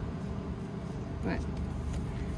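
Steady low background rumble, with one short spoken word about halfway through.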